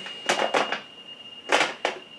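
Makeup products and containers clinking and rattling as they are handled, in two short clusters about half a second and a second and a half in. Under them runs a steady high-pitched whine from a heater.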